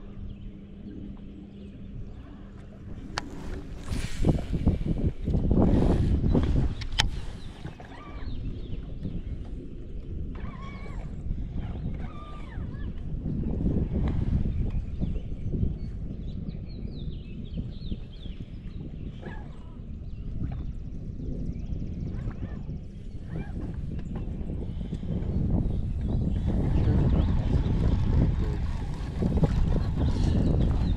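Wind buffeting the microphone, a rough low rumble that swells and fades, with a few sharp clicks and knocks in the first seconds.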